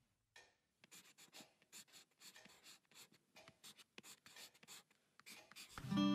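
Faint pencil scratching on paper in many short, irregular strokes.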